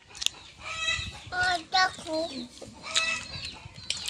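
Hens clucking in a string of short calls, several over the few seconds.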